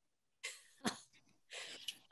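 Faint breath noises from a person about to speak: a short breathy puff about half a second in, a sharp click, then a brief intake of breath ending in a small mouth click.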